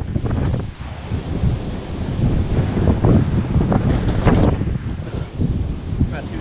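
Wind buffeting the microphone, a heavy low rumble that surges in gusts about three and four seconds in.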